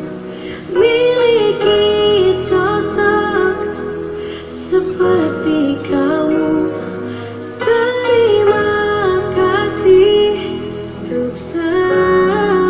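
A woman singing a calm, romantic love song in Indonesian over soft instrumental accompaniment, in phrases of held notes with short breaks between them.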